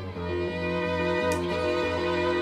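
Violin and guitar playing a duet: bowed violin lines that shift pitch every half second or so, over a steady low held note.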